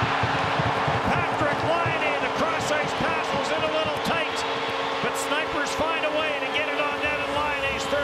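Hockey arena crowd cheering and screaming at a home-team goal, with a steady goal horn sounding underneath.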